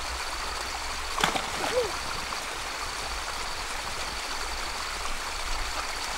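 Steady rushing of a stream, with a small waterfall spilling into it, and a brief knock about a second in.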